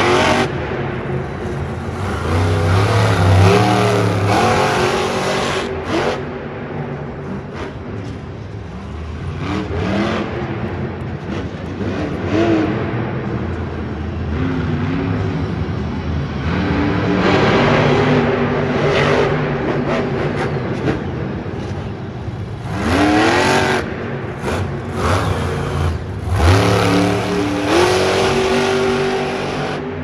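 Monster truck's supercharged V8 revving hard over and over, its pitch rising and falling with the throttle, with two sharp climbing revs near the end.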